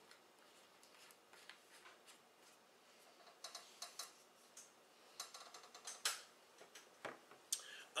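Near silence: quiet room tone with a few faint, scattered clicks, mostly in the second half.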